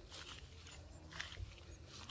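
Footsteps of a person walking outdoors, two soft steps about a second apart, over a low steady rumble.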